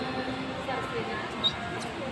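Indistinct voices of people talking, with a short high squeak about one and a half seconds in.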